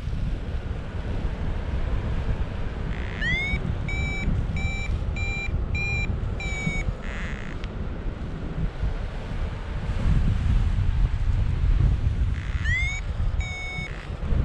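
Paragliding variometer beeping: a short rising chirp, then a run of evenly spaced beeps, with another chirp and beep near the end, the climb tone that signals rising air. Under it, steady wind rush on the microphone from flight.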